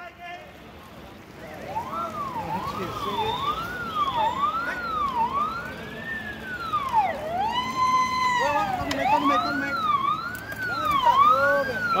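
An electronic emergency-vehicle siren wailing, its pitch rising and falling about once a second, starting about a second in; near the middle it holds one steady tone for about a second before the wail resumes.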